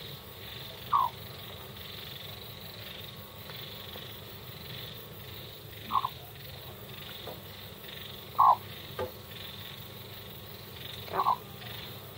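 Pet hen making four short clucks a few seconds apart as she settles down to sleep, over a faint steady hum.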